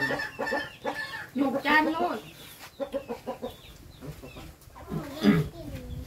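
Chickens clucking in short calls, with a few words of speech about a second in.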